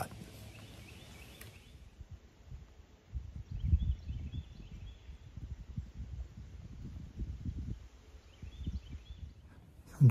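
Wind gusting on the microphone in open woods, an uneven low rumble that starts about three seconds in, with a few faint high bird chirps.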